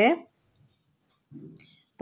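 Near silence in a pause between spoken phrases, with a brief faint low sound about a second and a half in; no frying sizzle is heard.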